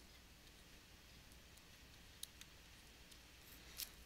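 Near silence with a faint low hum, broken by a few faint clicks of a stylus tapping and dragging on a drawing tablet. The sharpest click comes a little past the middle.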